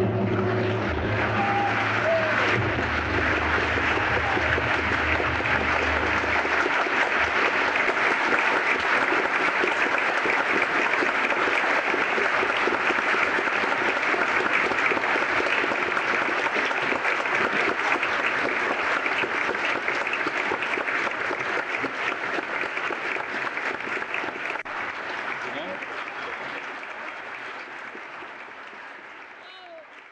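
Opera audience applauding steadily after the music stops, with scattered voices in the crowd. A low rumble dies away in the first several seconds, and the applause fades out over the last few seconds.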